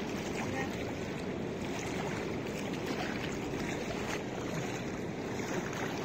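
Steady rush of a fast-flowing river with a choppy surface, an even noise without breaks or sudden sounds.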